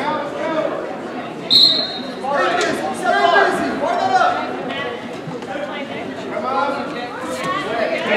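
Several voices of coaches and spectators shouting and talking in a large gym hall during a wrestling match, with a short high-pitched tone, a squeak or whistle, about a second and a half in.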